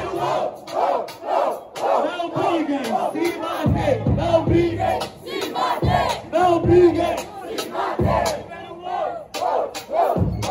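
A crowd of spectators shouting and chanting together, many voices yelling loudly throughout.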